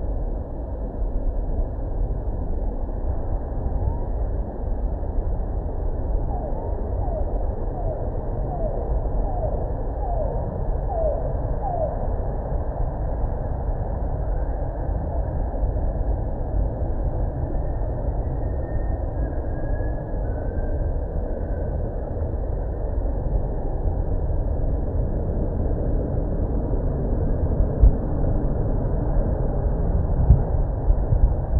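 Steady low rumble of an XCMG excavator's vibratory pile hammer driving steel sheet piles, with a short run of small rising chirps about a third of the way in.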